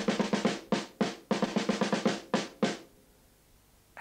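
A big drum beaten loudly with two drumsticks in quick runs of strong beats, some close together like short rolls. The beating stops a little under three seconds in.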